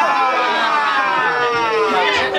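A crowd member's voice holding one long 'ahhh' shout that slides slowly down in pitch, a hype reaction to the rapper's punchline.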